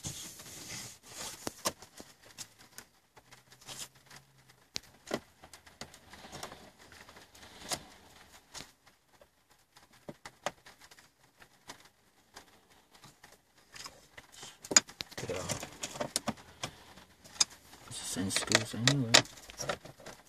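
Scattered small clicks and light metallic clinks of a screwdriver taking out a T20 Torx screw from a car's plastic dashboard console trim, with the hand handling the trim. A man's voice murmurs over the last few seconds.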